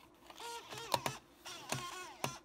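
Slot-loading optical drive of a 2008 polycarbonate MacBook drawing in a DVD: faint short whirs that slide in pitch, with a few sharp clicks as the disc is pulled in and clamped.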